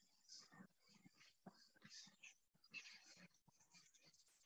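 Near silence, with faint, scattered scratches of a stylus writing on a tablet.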